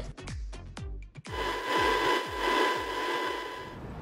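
A produced transition sound effect between podcast segments: a quick run of falling low swoops and clicks, then a wash of hiss with a thin steady tone that fades out near the end.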